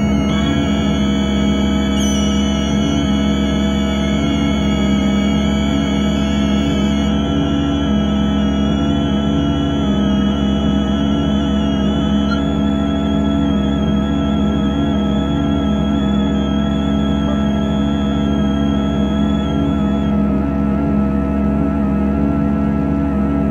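Korg AG-10 General MIDI sound module playing a dense, atonal cluster of held synthetic tones under MIDI control, forming a steady drone. Its highest tones drop out one after another, about a third, half and most of the way through.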